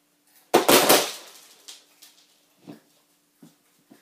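A toy hockey stick clattering down onto a plastic children's table and plate: a loud burst of several quick knocks about half a second in, followed by a few lighter knocks.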